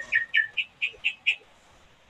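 A bird chirping in a quick, even series of short chirps, about four a second, that stops about a second and a half in.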